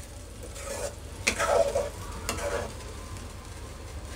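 Metal spoon stirring a thick, simmering cornflour-thickened gravy in an aluminium kadhai, with a couple of sharp clinks of spoon against pan about a second and two seconds in.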